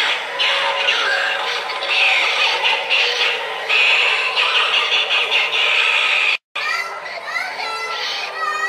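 Animatronic Halloween prop playing its recorded, electronically treated voice and sound effects loudly through its built-in speaker. It cuts off abruptly about six and a half seconds in, and gliding, voice-like sounds follow.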